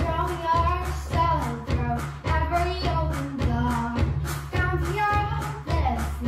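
A young girl singing a song over an instrumental backing track with a steady bass and beat.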